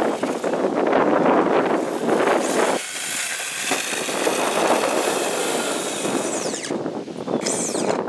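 Brushless electric motor (Traxxas Velineon 3500kV) of an RJ Speed Pro Mod RC drag car running with a high whine, which falls and then rises again near the end. The motor's pinion gear has spun on its shaft, ending the run.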